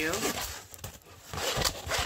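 A thick diamond painting canvas under its clear plastic cover film crinkling and crackling as it is handled and bent, strongest in the second half.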